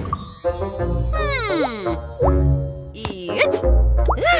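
Upbeat children's cartoon background music with a steady beat, overlaid with comic sliding sound effects: a long falling glide about a second in, then short rising swoops.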